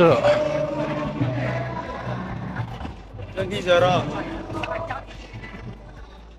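Voices of other people over a steady street background, with faint music.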